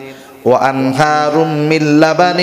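A man's voice chanting a sermon in a drawn-out melodic tune through a microphone, holding long notes; it comes back in after a brief breath about half a second in.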